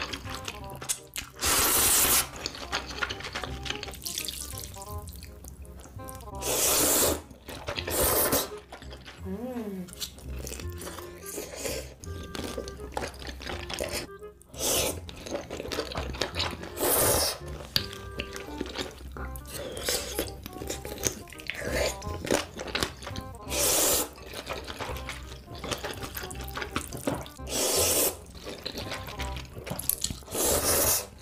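A person slurping spicy ramen noodles and broth, with loud slurps every few seconds, about eight in all.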